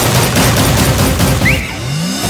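Trailer sound mix of a rapid burst of gunfire over dramatic music. Near the end it gives way to a short rising sweep.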